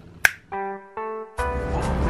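A single sharp finger snap about a quarter second in, followed by two held musical notes and then music with a steady beat starting partway through.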